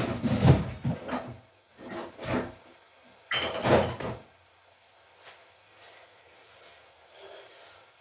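Off-screen knocks and clatter in the kitchen, like a drawer being opened and shut, in several bursts during the first half, then quiet.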